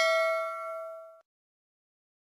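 Notification-bell chime sound effect: a single bell-like ding that rings with several clear overtones and dies away about a second in.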